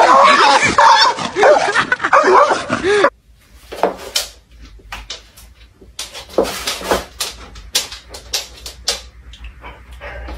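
A dog yelping and whining in quick, arching cries for about three seconds, then cutting off suddenly. A scattering of sharp taps and clicks follows.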